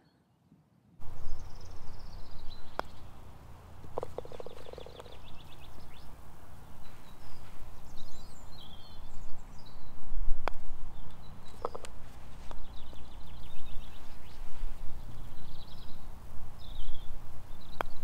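Putter striking golf balls on a putting green: a few sharp clicks spread several seconds apart. Between them there is a steady low wind rumble on the microphone and birds singing.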